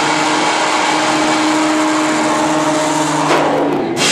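A live heavy rock band's distorted electric guitars holding a loud, ringing chord in a dense wash of amplifier noise, with steady held tones underneath. The sound changes about three seconds in.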